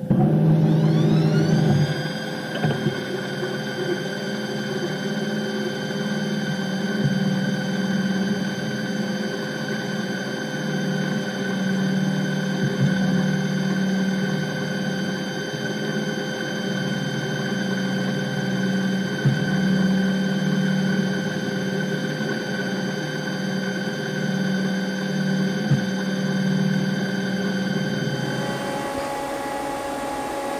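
Mazak Quick Turn CNC lathe's live-tooling endmill spinning up and milling a hex in the end of a bar, its worn-bearing milling holder giving a steady whine that rises in pitch over the first two seconds and then holds, over a throbbing low cutting rumble.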